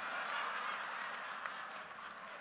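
Congregation laughing, with a few scattered claps, fading gradually.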